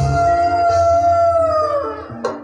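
One long high note held steadily by a voice over gamelan accompaniment, sliding down and breaking off just before the end.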